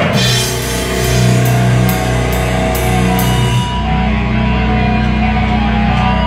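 A live rock band playing loud, with distorted guitars and bass holding low notes under the drums. Cymbal crashes land about twice a second, then stop a little past halfway while the guitars and bass ring on.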